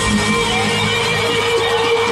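Live pop concert music played loud through an arena sound system, heard from the audience seats, with one long note held steadily through it from just after the start.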